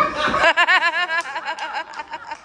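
A single person laughing: a quick run of high-pitched ha-ha pulses starting about half a second in, then trailing off.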